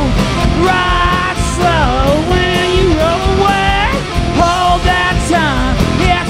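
Rock band playing live, heard from the audience floor of a club: a lead vocal sung over electric guitars, bass and drums.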